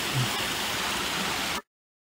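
Shallow rocky creek running over stones at the top of a stepped waterfall, a steady rush of water with a brief low sound just after the start. It cuts off suddenly to silence about one and a half seconds in.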